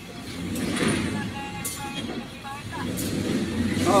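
A tractor-trailer truck's engine running in the background as a low steady rumble, with people talking indistinctly about a second in and a short exclamation at the end.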